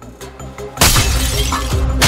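Trailer score, quiet at first, then a sudden loud crash just under a second in, after which the music stays loud.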